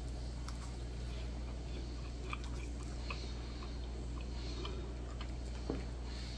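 A person biting into and chewing a baked cheese danish, a faint scatter of small crackles and mouth clicks, over a steady low hum.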